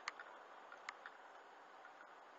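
Faint, steady road noise inside a moving car's cabin, with a few light, irregular ticks, the clearest right at the start and just before a second in.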